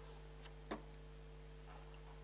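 Quiet room tone with a steady low hum and a single short click about two-thirds of a second in.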